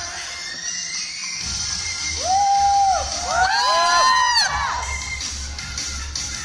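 Pop dance music playing over the hall's speakers, with the audience screaming and cheering about two seconds in: several high-pitched shrieks that overlap and die down after a couple of seconds.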